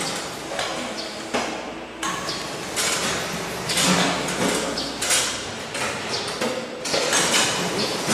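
Sprout packing machine running, with irregular metallic knocks and clatter from its stainless-steel conveyors and feed trays.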